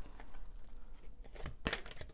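Oracle cards being handled and drawn from the deck: a faint papery rustle and sliding of card stock, with a sharp tap about one and a half seconds in.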